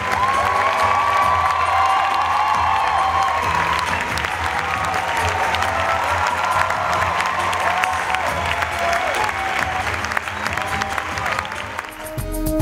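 Theatre audience applauding and cheering at a curtain call: dense, sustained clapping with whoops and whistles rising and falling above it.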